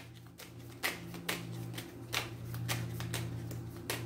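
A deck of tarot cards being shuffled by hand: soft, irregular card clicks and flutters, a few each second, over a steady low hum.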